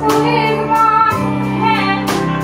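Live band music: a woman singing over strummed acoustic guitar, electric guitar, bass guitar and drums.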